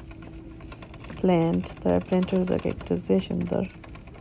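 A woman speaking in short phrases over a faint steady hum, which is heard on its own for about the first second.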